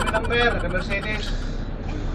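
Steady low rumble of a bus engine idling in street traffic, with a man's voice talking briefly in the first second.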